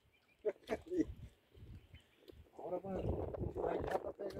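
Quiet, indistinct men's voices: a few brief sounds in the first second, then a longer stretch of murmured talk from about two and a half seconds in.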